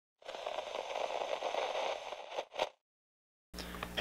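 Crackling, static-like noise for about two seconds, then a brief burst.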